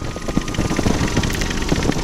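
Cors-Air Black Bull two-stroke microlight engine throttled back to idle for a power-off stall, ticking over in a rough, uneven pulse under constant rushing airflow noise.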